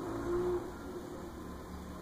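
A bird's low, faint coo, ending about half a second in, over a steady low background hum.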